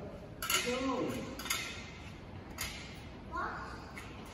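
Three sharp metallic clicks, about a second apart, as parts are handled at the side of a Field Marshall Series 1 tractor that is not yet running.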